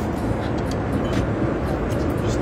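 Steady low rumbling cabin noise of a private jet, with engine and air noise heard from inside the cabin and a few faint clicks over it.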